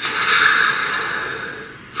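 A person taking one long, audible breath that gradually fades out over nearly two seconds.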